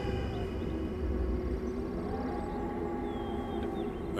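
Film background score: a quiet, sustained chord held steady, without a beat.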